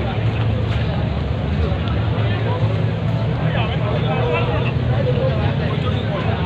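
Passers-by talking in the background on a busy walkway, over a steady low rumble.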